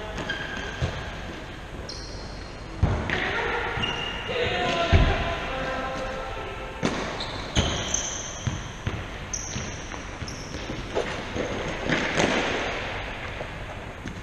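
Football being kicked and bouncing on a wooden sports-hall floor: a string of sharp thuds at uneven intervals, echoing in the large hall, with players' shouts between them.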